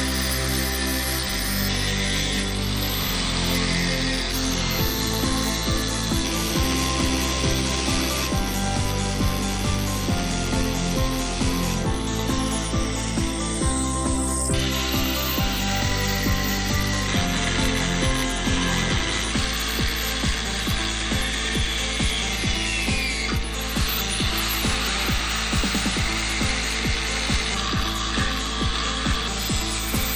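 Angle grinder with an abrasive cutting disc cutting through a steel leaf spring, a steady grinding hiss. Background music plays over it, with a bass line that steps between notes and a steady beat from about two-thirds of the way in.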